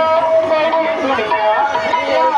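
A woman singing a song over a microphone and loudspeakers. She holds a high note that ends just after the start, then moves into wavering, shifting melodic phrases.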